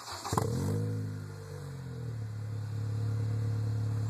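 Acura RSX base's 2.0-litre four-cylinder engine heard through an HKS Hi-Power aftermarket exhaust: the revs flare sharply once just after the start, fall back over a second or so, and settle into a steady idle.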